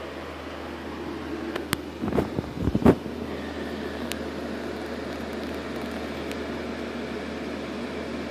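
Handling noise from a phone being moved and bumped: a cluster of low bumps and rubs between two and three seconds in, with a few light clicks, over a steady background hum.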